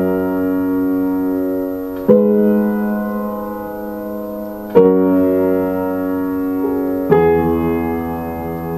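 Upright piano playing slow, held chords, three struck in turn, each left to ring and fade before the next.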